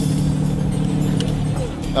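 Steady low drone of a fishing boat's engine running.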